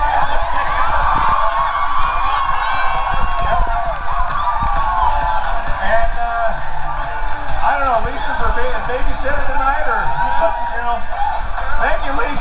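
Music played over a PA system with an audience cheering and whooping over it; shouting voices come and go throughout.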